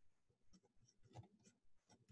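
Faint strokes of a felt-tip marker writing on paper, a few short scratches spread across the moment.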